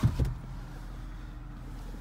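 Porsche Cayenne GTS V8 idling steadily, heard from inside the cabin as a low, even hum.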